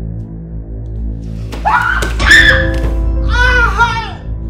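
A low, steady music drone, and about one and a half seconds in a woman's high-pitched screams break in: two loud cries whose pitch rises and falls.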